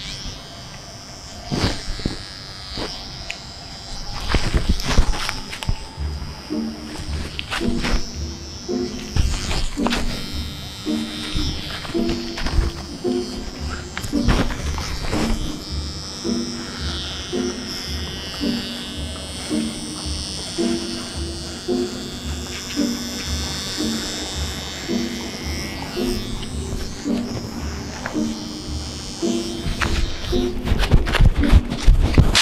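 Electric hair clipper buzzing as it runs over a head of hair. Background music with a steady beat comes in after about six seconds, and there are a few sharp knocks early on.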